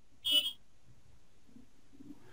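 A single short electronic beep about a quarter second in, then faint room tone.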